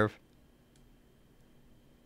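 The tail of a spoken word right at the start, then near-silent room tone with two faint computer mouse clicks, about three-quarters of a second and a second and a half in.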